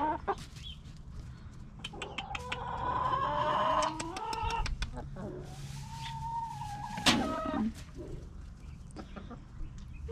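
Domestic hens clucking and calling in short bursts, then one longer drawn-out call about six seconds in. A sharp click comes just after it.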